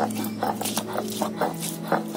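Stone roller of a shil-nora grinding slab rocking over wet ginger and garlic paste, stone knocking and scraping on stone in quick even strokes, about three to four a second, with a low steady hum underneath.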